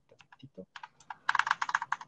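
Typing on a computer keyboard: a few scattered keystrokes, then a quick run of rapid keystrokes in the second half.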